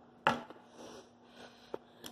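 A short puff of breath blown out through puffed cheeks, then faint breathing and a single small click near the end.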